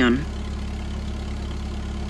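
Truck engine idling with a steady low hum that does not change. The tail of a spoken word ends just at the start.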